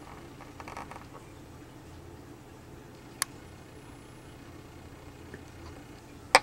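A single sharp click of a computer mouse button about three seconds in, over faint room tone.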